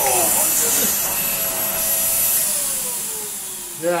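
Numatic Henry HVR160 vacuum cleaner, fitted with a replacement motor, running with a steady hiss and high whine. A little over two seconds in it is switched off, and its pitch falls steadily as the motor winds down.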